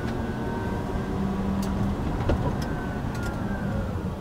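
Cabin sound of the Lucid Air prototype electric sedan rolling slowly: a steady low road and tyre rumble with a faint whine from the electric drive as the car slows under regenerative braking. A few light clicks.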